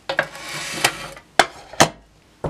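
An empty drilled guitar-pedal enclosure slid across a wooden tabletop by hand for about a second, then three sharp knocks about half a second apart as it is handled and set in place.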